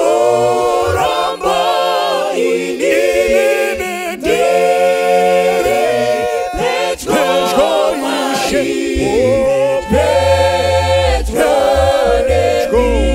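A cappella vocal group singing in harmony, a man's lead voice over sustained chords from mixed men's and women's voices.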